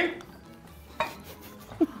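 A single light clink of tableware, a dish or utensil knocked on the table, about a second in, with quiet around it.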